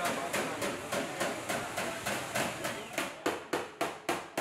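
Metal being hammered in a car body shop: an even run of sharp knocks, about three to four a second, growing crisper towards the end.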